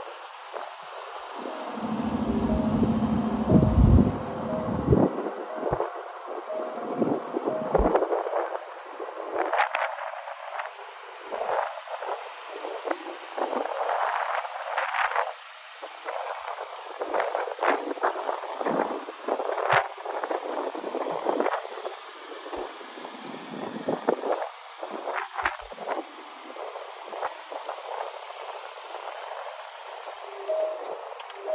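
Wind gusting across the microphone outdoors, with rustling handling noise, coming and going unevenly; a heavy low buffeting rumble a few seconds in.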